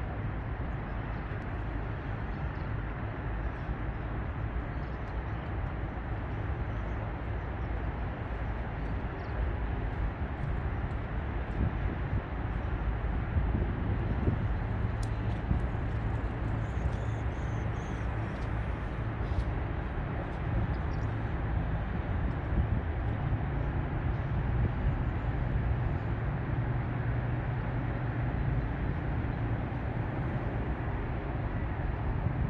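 Steady low rumble of distant road traffic, with a few faint high chirps about halfway through.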